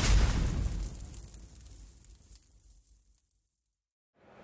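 Intro sound effect for an animated logo: a deep, booming whoosh that hits at the start and fades away over about three seconds.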